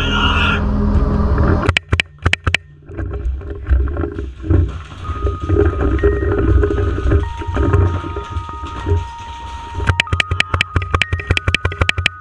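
Paintball markers firing in rapid strings of shots. There is a short burst about two seconds in and sustained rapid fire over the last two seconds, with low rumbling movement noise between the bursts and a few steady tones in the background.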